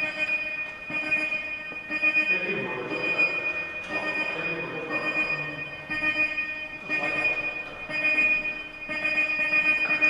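Electronic countdown tone from an armed airsoft bomb prop: a steady, high-pitched, multi-note electronic sound that re-starts about once a second while the timer runs.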